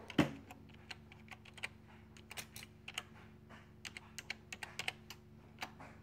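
Typing on a computer keyboard: irregular key clicks in short runs, with one louder knock just after the start.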